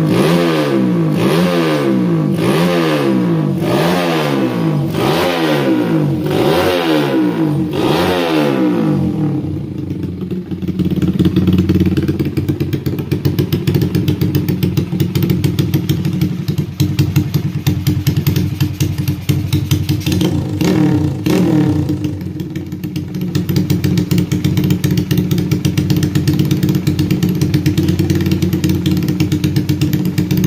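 Yamaha Jupiter Z single-cylinder four-stroke engine, bored out to 140cc, running on a test stand: revved in quick blips about once a second, then settling to a steady idle about nine seconds in, with one more short blip a little past twenty seconds. The freshly rebuilt engine runs smoothly, as its builder says, on a new carburettor not yet tuned.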